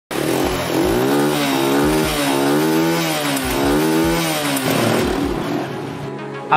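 A buzzy, engine-like tone that swings up and down in pitch about once a second, over a steady beat of paired low thumps: an intro sound effect or sting.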